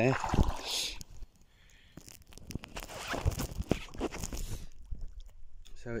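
Shallow lake water sloshing and lapping around someone wading, with a few soft knocks, from about two seconds in until shortly before the end.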